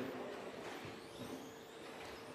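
Faint high-pitched whine of brushless electric motors in 1/10-scale 2WD 13.5-turn RC short-course trucks, rising and falling in pitch as they accelerate and brake around the track, over a steady faint hum.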